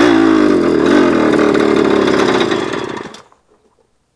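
Moped engine running steadily under way, then the sound falls away to silence about three seconds in.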